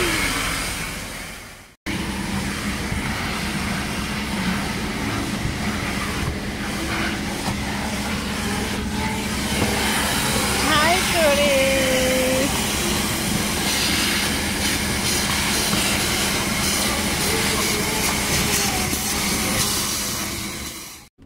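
Vacuum cleaner running steadily with a low hum as its nozzle sucks at the car's floor carpet.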